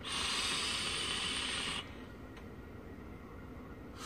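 A long drag on an e-cigarette: air drawn through the atomizer's airflow holes over the firing coil as a steady hiss for almost two seconds, cutting off abruptly, then fainter breathy noise.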